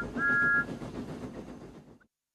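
Thomas the Tank Engine's steam whistle: the tail of one short toot, then a second toot of about half a second, each sounding two pitches together with a quick upward slide at the start. The engine's running noise follows and fades away to silence.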